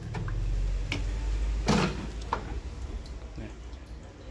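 Dish rack of a Panasonic NP-TR6 dishwasher being pulled out and handled: a few clicks and knocks from the rack, the loudest a little under two seconds in, over a low rumble.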